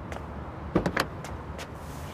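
A few footsteps on pavement, then the van's door handle and latch clicking and knocking about three quarters of a second in as the front passenger door is pulled open.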